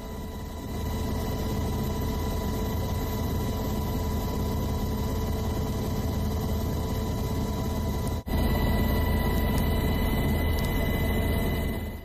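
Steady engine noise of an aircraft in flight, heard from inside: a deep rumble with a steady whine over it. It cuts out for an instant about eight seconds in and comes back slightly louder.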